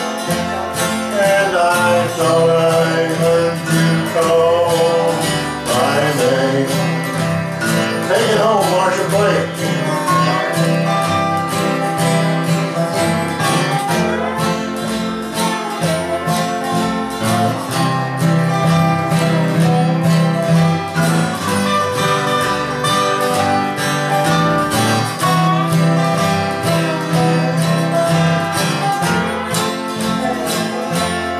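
Country band playing with plucked guitars and a steady beat, an instrumental passage with no vocal line; a few gliding, wavering notes stand out about six to nine seconds in.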